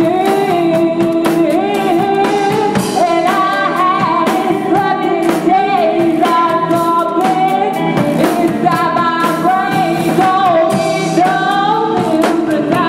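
Live rock band: a woman singing lead over electric guitars, with drums and cymbals hit steadily throughout.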